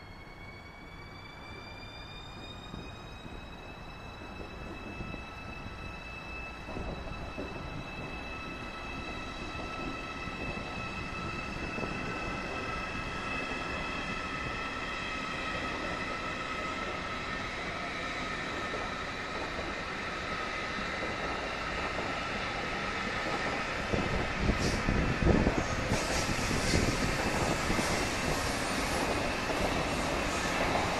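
ICE high-speed electric train running through a station: a steady electric whine of several tones rises in pitch over the first few seconds and then holds, while the rolling noise grows steadily louder. From about three-quarters of the way in the train passes close at speed, with a loud rushing of wheels on rails and a few thumps.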